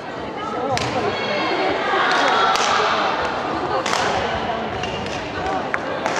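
Badminton rackets striking a shuttlecock in a rally: four sharp hits, roughly every one and a half to two seconds.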